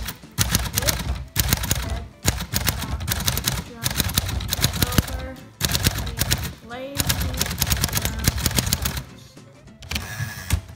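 1946 Smith Corona Silent manual typewriter being typed on: fast runs of typebar strikes against the platen, with short pauses between runs and a stop near the end. The platen damps the strikes, giving a muted typing sound.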